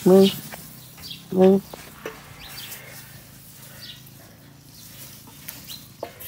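Two short spoken words, then a low outdoor background with a few faint bird chirps.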